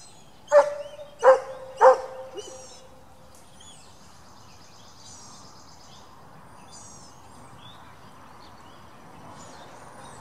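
A dog barks three times in quick succession in the first two seconds. Birds sing faintly in the background.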